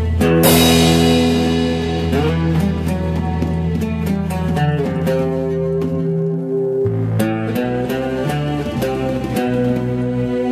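A rock band playing a song: held chords over a bass line, with a drum kit keeping time. A cymbal crash comes about half a second in, and the deep bass drops out briefly just past the middle.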